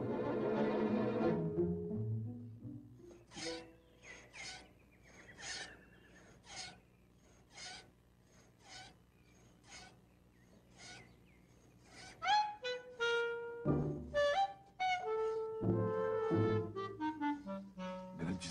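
Orchestral film score with no dialogue. It opens with a dense low passage that sinks in pitch, continues with sparse short staccato notes about twice a second, and ends with woodwind and brass phrases of held and sliding notes in the last six seconds.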